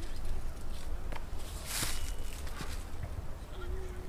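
Outdoor ambience over a steady low rumble, with a brief rustling swish about two seconds in as a disc golf player throws a forehand drive off the tee.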